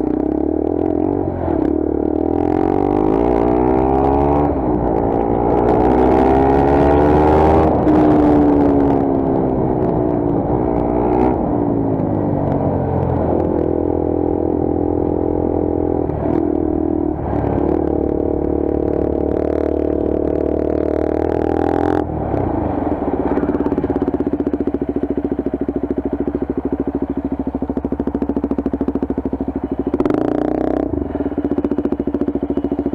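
Motorcycle engine heard from the rider's bike-mounted camera while riding. It revs up with rising pitch for several seconds, eases off about a third of the way in and holds steady cruising revs with short dips. It settles to low, even revs over the last eight seconds.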